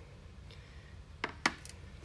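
A few light clicks of a paintbrush tapping against a plastic watercolor paint tray while water is worked into the orange paint: two close together just past halfway, a fainter one after, and a sharper one at the end.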